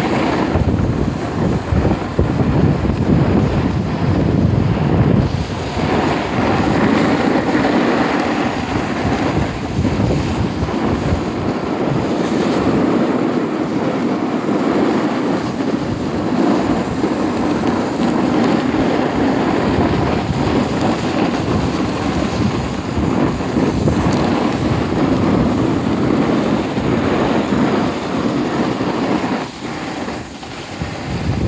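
Steady rush of wind buffeting the microphone of a camera moving down a groomed ski slope, with the scraping hiss of sliding over packed snow underneath.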